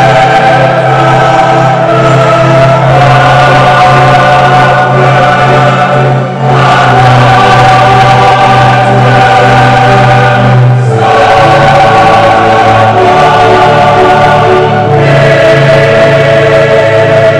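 Church choir singing a hymn in long held chords over a steady low note, with a short break between phrases about six seconds in and again near eleven seconds.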